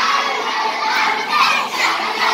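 A crowd of children shouting and cheering together.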